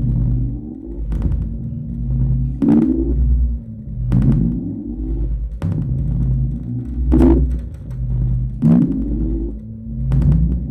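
Live experimental electro-noise improvisation on self-made electronic instruments. A deep low drone swells and dips in a loop. A sharp click comes about every one and a half seconds, each one followed by a short rising glide.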